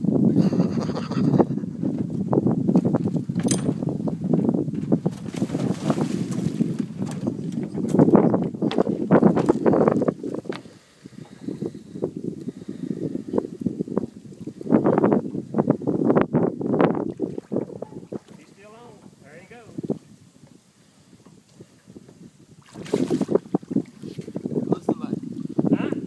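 A man wading chest-deep in river water beside a boat: water splashing and sloshing, mixed with wind rumbling on the microphone and muffled voices. It is busy and uneven through the first half, then quieter near the end.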